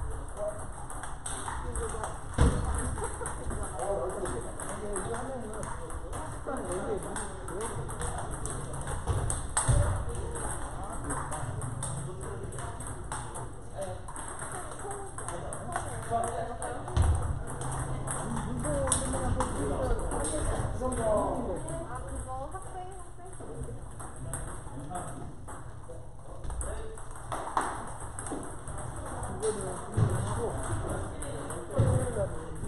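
Table tennis rallies: the celluloid-type plastic ball clicking off rackets and tables in quick back-and-forth exchanges, from several tables at once, with a few louder low thumps and people talking in the background.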